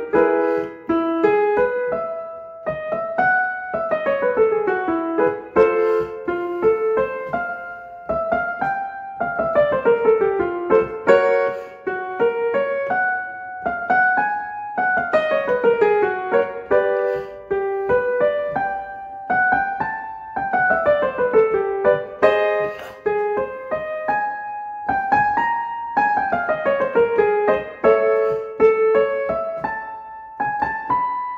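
Keyboard accompaniment for a vocal warm-up exercise: a quick descending run of notes played over and over, about every five to six seconds, each repeat starting a step higher as the exercise moves up the range.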